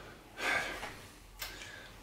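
A man's audible breath, a short noisy intake about half a second in that fades away, followed by a faint click a second later.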